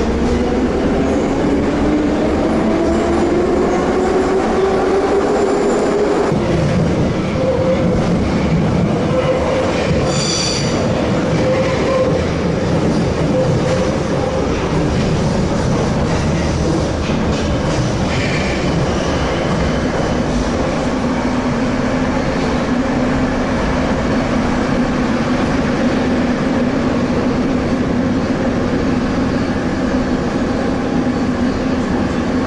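Metro train heard from inside the car: the traction motors whine up in pitch as it pulls away, then it runs on steadily with wheel and track noise. There is a brief high squeal about ten seconds in.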